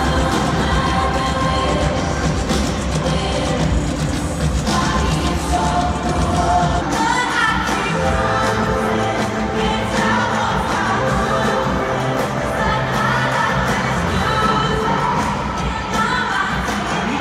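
Amplified live pop music played over a stadium sound system, with a woman singing over the band.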